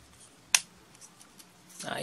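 A single sharp click of plastic parts on a Transformers action figure snapping into place as it is transformed by hand, about half a second in, with faint handling noise after.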